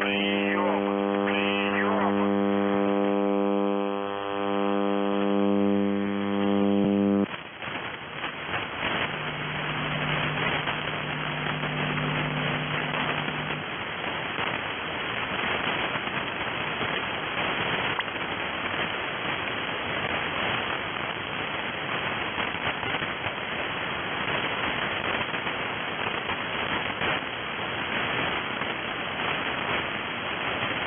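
Shortwave radio receiver audio: a loud steady hum from a station's open transmitter, with a voice calling over it near the start, cuts off abruptly about seven seconds in as the station switches its transmitter off. Band static and hiss follow, with a fainter low hum for a few seconds after the cutoff.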